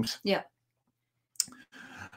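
A brief spoken "yeah", then a gap of silence, then a sharp click about one and a half seconds in, followed by faint breathy noise before speech resumes.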